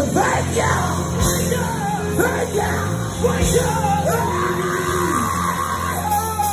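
Live gospel group performing with a band: male voices singing and shouting out lines over a steady bass, with one long held high note near the end.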